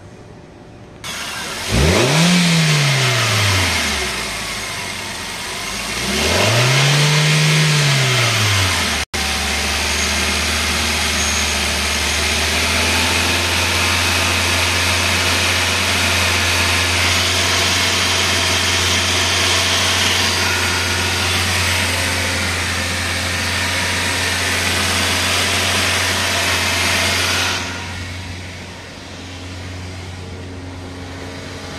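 Car engine revved up and back down twice, then idling steadily with an even hum. It turns fainter a couple of seconds before the end.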